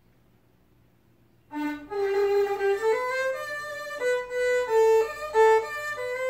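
Solo violin played with the bow: near silence at first, then about one and a half seconds in a melody begins, one note at a time with frequent changes of pitch.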